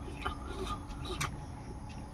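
Fingers working rice in a metal bowl: faint rustling with a couple of small clicks.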